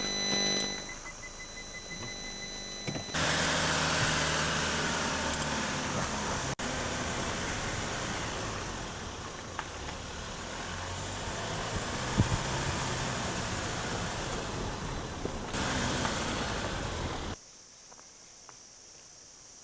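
A car driving, its engine and road noise heard as a steady rumble through a camcorder's built-in microphone. It comes in about three seconds in after a quieter stretch and cuts off suddenly near the end.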